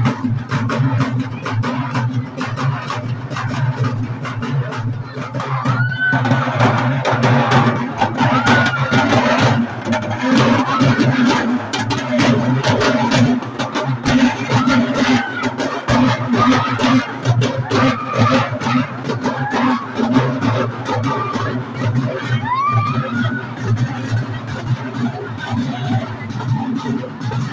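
Festival procession music: drums beating in a fast, dense rhythm over a steady low drone, with crowd voices around it and a few rising cries about six seconds in and again near the end.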